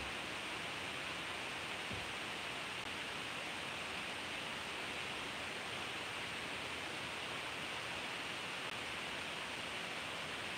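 Steady, even hiss of room and microphone background noise with no other sound in it, apart from a faint soft thump about two seconds in.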